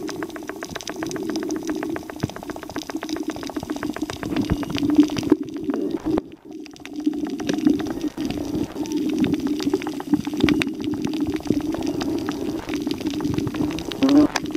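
Underwater sound picked up by a camera below the surface over a coral reef: a dense, steady crackle of fine clicks over a low rumble of moving water, with a brief drop about six seconds in.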